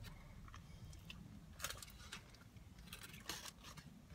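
Faint crunching and chewing as a bite is taken from a Taco Bell Loaded Taco Burrito, with a few short crisp crunches about a second in, midway and near the end.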